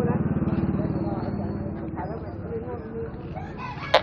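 A small motorbike engine running close by, loudest at first and fading over the first couple of seconds, with voices in the market street. A single sharp click comes just before the end.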